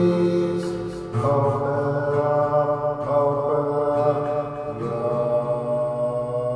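Slow, meditative chant-like vocal music with long held notes. A fuller chord comes in about a second in.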